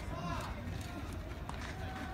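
Several voices shouting drawn-out calls across a baseball field, with a single sharp click about one and a half seconds in.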